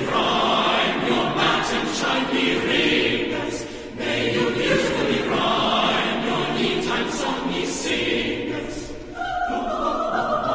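Mixed choir singing a Christmas carol in full voice, with brief breaks between phrases about four and nine seconds in; near the end it holds a sustained chord.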